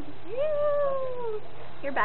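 A young woman's voice making one long, high-pitched, meow-like whine without words. It rises quickly, then slides slowly down in pitch for about a second.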